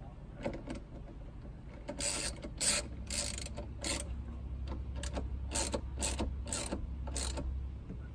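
Socket ratchet wrench clicking in a run of short strokes, about two a second, as the nut on the battery's negative terminal clamp is tightened.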